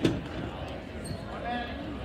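A single loud thump right at the start, ringing briefly in the hall, followed by spectators calling out.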